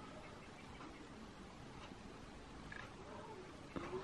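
Quiet room tone with a few faint, brief sounds in the last second.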